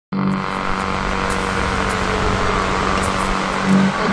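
Channel-intro sound effect: a loud, dense droning noise that starts suddenly and holds steady, with one tone slowly falling in pitch.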